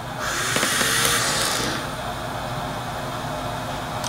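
Philips Trilogy 100 ventilator delivering a mechanical breath: a rush of air through the circuit lasting about a second and a half, fading to its steady running hum.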